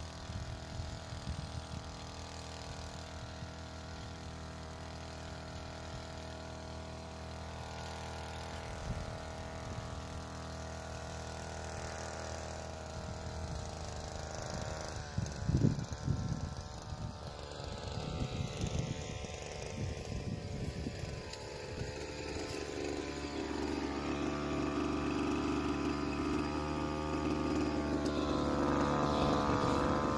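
Small two-stroke engine of a Blade GP 767 backpack power sprayer running steadily at a constant speed while driving its spray pump, growing louder as it comes close. A few loud thumps come about halfway through.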